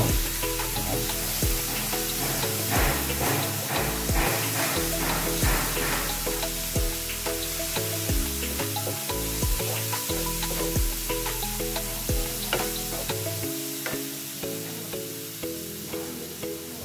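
Onion and masala mixture sizzling in a nonstick frying pan with a little added water, while a wooden spatula stirs it, with a run of quick scraping strokes a few seconds in. Background music plays under it.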